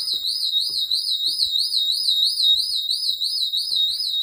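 Shop intruder-alarm siren sounding without a break, very loud: a single high, piercing tone warbling up and down several times a second. The alarm has gone off and cannot be reset from its keypad.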